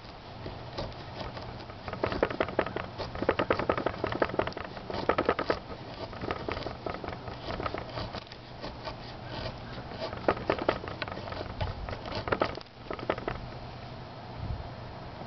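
A small fixed-blade survival knife (the Breeden B&B) scraping down a wooden stick to shave off fine tinder, in several bursts of quick, short strokes.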